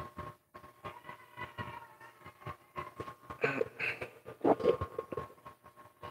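Faint clicks and rustles from a foam-covered handheld microphone being handled close to the mouth, over a steady faint whine. A brief muffled vocal sound comes about three and a half seconds in.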